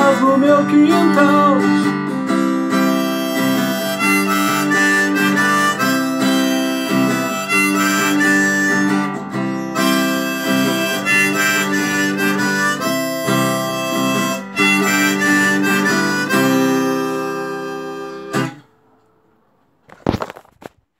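Harmonica in a neck rack played over a strummed acoustic guitar, an instrumental outro. It ends on a chord held for about two seconds that stops abruptly about a second and a half before the end.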